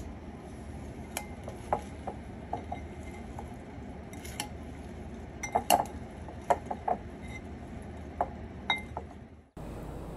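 A utensil clinking against a glass mixing bowl as warm potatoes and green beans are stirred through a creamy dressing. Scattered light clinks, with a handful of sharper ones midway.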